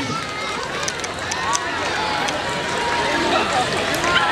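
A large outdoor crowd chattering, with many voices overlapping and no single clear talker.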